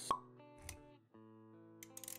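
Intro music with held notes and motion-graphics sound effects: a sharp pop just after the start, the loudest moment, and a softer low thump a little later. The music cuts out briefly about a second in, then resumes.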